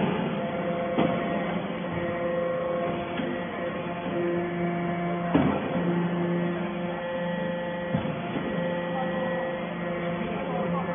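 Hydraulic briquetting press for casting chips running: a steady hum of several tones from its hydraulic power unit, broken by a few sharp knocks about a second in, just past halfway and near the end.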